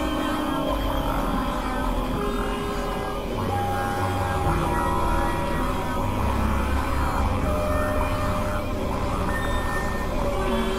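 Experimental electronic drone music from synthesizers: many held tones at different pitches that come in and drop out, over a dense, rumbling low end.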